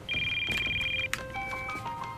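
A phone's electronic trilling ring, one burst of about a second, followed by soft sustained background music notes.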